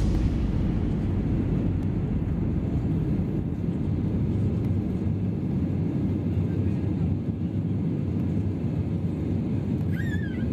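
A jet airliner's engines and airflow, heard inside the passenger cabin as a steady low rumble.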